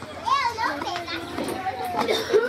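Children's high-pitched voices calling and chattering at play, mixed with other people talking.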